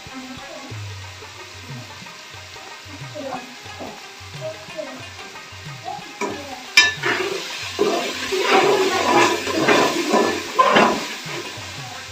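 A long-handled spatula stirring and scraping through the wet contents of a steel cooking pot: a sharp clack, then a run of loud scraping strokes in the second half.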